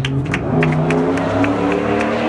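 A motor vehicle engine accelerating, its pitch climbing steadily for about two seconds, over scattered hand claps.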